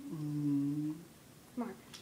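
A person hums one steady low note with closed lips, about a second long, in a small room.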